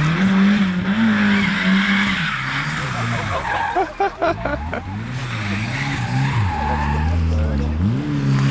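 Car engine revving up and down hard through tight manoeuvres, with tyres squealing and skidding on the tarmac. The engine drops to a low, steady note shortly before the end, then revs sharply again.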